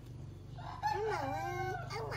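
An animal's drawn-out call, wavering up and down in pitch, starting a little under a second in and lasting about a second, with the start of another call just at the end.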